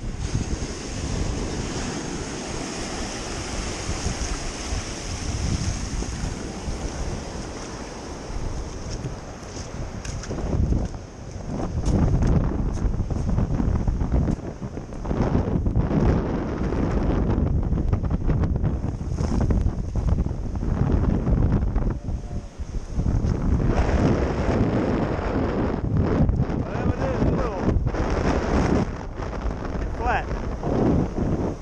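Wind buffeting the microphone in gusts over the wash of surf on the beach, with a few light clicks and knocks.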